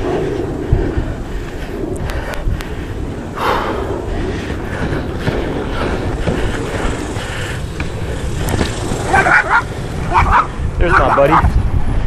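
Inline skate wheels rolling over rough pavement: a steady rumble with scattered short knocks from the stride and from bumps in the surface.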